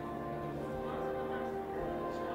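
Organ playing slow, sustained chords, each note held steady before the chord changes.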